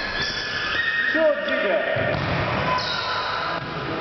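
Futsal being played in a reverberant sports hall: players' voices calling out, and the ball being kicked and bouncing on the court, with a sharp hit about a second in.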